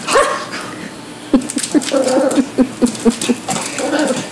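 Yorkshire terrier puppy vocalising at fish behind aquarium glass: one short cry at the start, then a quick run of short whining yips for about two seconds.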